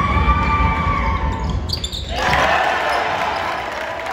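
Basketball game in a school gym: ball bouncing and players moving on the hardwood amid shouting from the crowd. There is a held high shout early on, and the noise swells sharply about two seconds in.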